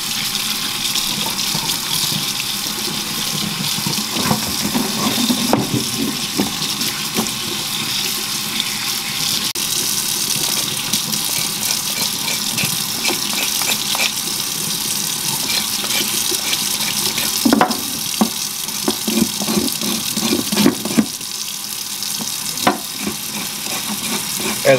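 Kitchen faucet running steadily into a stainless steel sink while sassafras roots are rinsed under it. Short bursts of scraping and knocking come from a knife scraping the wet roots over a cutting board, a cluster about five seconds in and more around three-quarters of the way through.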